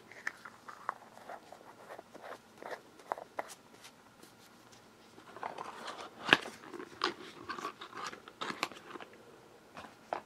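Close-up sticky, crackling clicks of fingers working chest rub ointment. The clicks are scattered, busier in the second half, with one sharp louder click about six seconds in.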